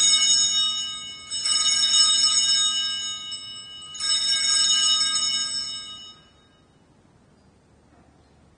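Altar bells (sanctus bells) rung at the elevation of the host during the consecration: a bright cluster of high ringing tones, shaken again about a second and a half in and again about four seconds in, dying away after about six seconds.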